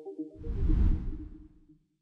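A whoosh sound effect with a deep rumble beneath it, swelling up about a third of a second in, peaking around a second in and fading away, while the last notes of the background music ring out and die.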